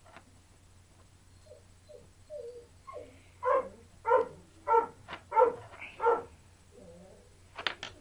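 A dog barking five times in an even run, starting about three and a half seconds in.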